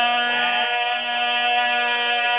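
Men's voices chanting in unison, holding one long steady note, with another voice sliding briefly over it in the first half-second. It is the sustained sung drone that backs a zakir's recitation at a majlis.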